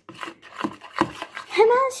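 A spoon stirring slime in a small plastic bowl, with uneven rubbing and scraping strokes against the bowl. A child's voice starts near the end.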